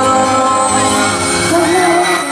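Live pop ballad heard through a concert sound system: a held chord rings on, and a singer's voice comes in with a wavering note about one and a half seconds in.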